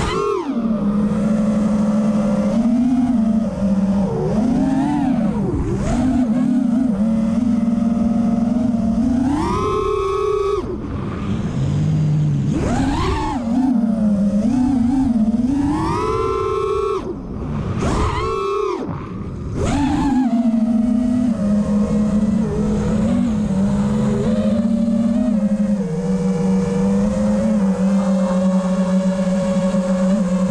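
FPV freestyle quadcopter's brushless motors (Cobra 2207 2450kv) whining, their pitch swooping up and down with each throttle punch and chop, with a few deep drops partway through and a steadier pitch near the end.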